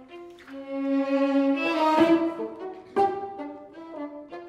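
Bassoon and string quartet (two violins, viola and cello) playing chamber music. A held low note swells into a loud full chord about two seconds in, followed by short, sharply attacked notes.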